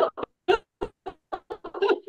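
Women laughing: a run of short, choppy bursts of laughter, several a second, with brief gaps between them.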